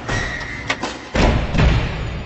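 Logo-reveal sound effects over intro music: a short sharp click, then two heavy thuds in the second half whose deep rumble slowly fades.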